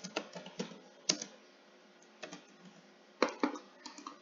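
Typing on a computer keyboard: separate keystroke clicks at an uneven pace, several in the first second, a lull, then a few more, the sharpest about three seconds in.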